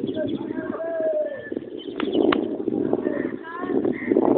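Indistinct voices calling out in short bursts over a steady rushing background noise.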